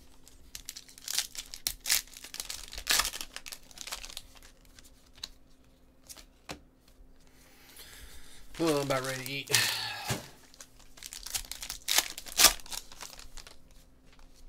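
A foil trading-card pack being torn open and its wrapper crinkled in several short bursts, with cards handled as they come out. A brief voice sounds about nine seconds in.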